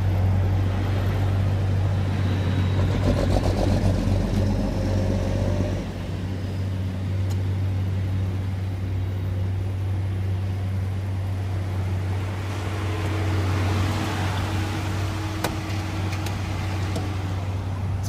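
Steady low hum of a car engine idling close by, with a light wash of road noise over it.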